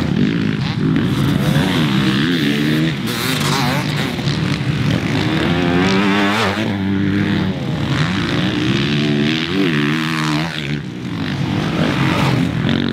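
Several motocross bikes racing over a dirt track, their engines revving up and down in pitch again and again, with more than one bike heard at once as they come close and pass.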